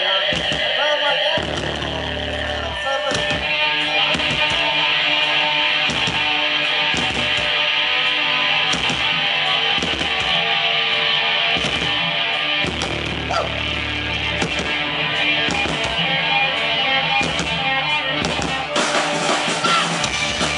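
Live rock band playing: electric guitars, bass guitar and drum kit, with a steady drum beat.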